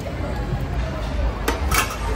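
Utensils knocking against a stainless steel hotpot: a sharp clink about a second and a half in, then a brighter ringing clink just after, over steady background chatter.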